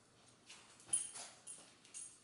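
Two dogs, a puppy and a French bulldog, scrambling and playing on a tile floor: a handful of short, sharp sounds, the loudest about a second in.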